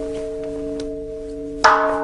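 Buddhist temple bowl bell (qing) ringing on, struck once more about a second and a half in: a sharp strike, then a ring that dies away over steady, lower ringing tones. It is rung to mark the worshippers' bows before the altar.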